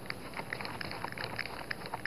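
Faint, scattered small clicks and taps of craft materials being handled on a tabletop.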